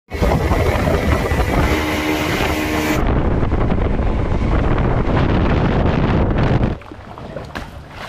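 Motorboat engine running at speed, with wind on the microphone. The sound changes abruptly about three seconds in and falls away sharply about a second before the end.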